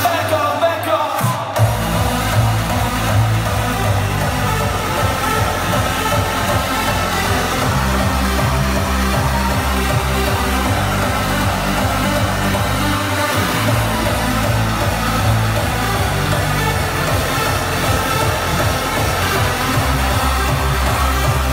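Loud electronic dance music with a heavy bass line, played over a DJ's sound system. The bass is out for the first second and a half, then comes in, and drops out again briefly about thirteen seconds in.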